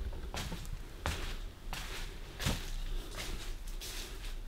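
Footsteps on carpet laid over with protective sheeting, soft steps about one every three quarters of a second, with a low rumble from the phone being carried.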